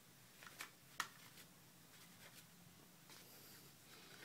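Near silence with a few faint clicks and taps from an iPod Touch being handled. The sharpest click comes about a second in.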